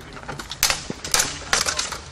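Practice longswords clashing during sparring: several sharp clacks of blade on blade. The first come about half a second and a second in, then a quick flurry of clashes near the end.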